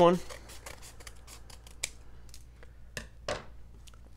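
Scissors cutting open a paper mailing envelope: a run of small crackling snips as the blades go through the paper, then two sharper snips about three seconds in.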